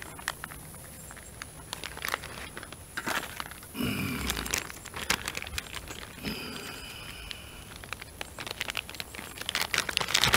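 Plastic food packages crinkling and rustling as bacon bits are shaken from their bag and a shredded-cheese bag is handled, with many small clicks. A short, louder low sound comes about four seconds in.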